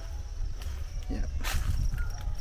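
Handheld camera moving through tall grass and sunflower plants: leaves brush against it with a sharp rustle about a second and a half in, over a steady low rumble of handling and footsteps. A faint, steady, high insect trill runs underneath.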